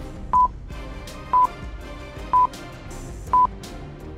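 Countdown timer beeping: a short, high beep once a second, four times, over soft background music.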